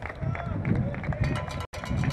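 Open-air ballpark sound picked up by the game camera's microphone: distant voices and crowd murmur over a low rumble, with a few short steady tones about halfway through. The sound cuts out for an instant near the end.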